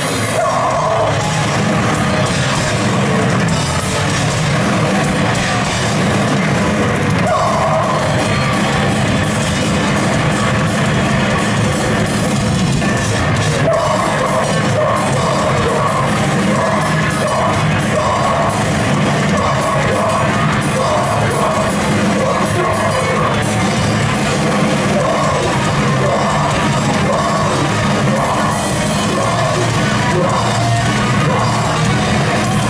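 Metalcore band playing a fast thrash number live in a hall: loud distorted guitars, bass and drums with shouted vocals.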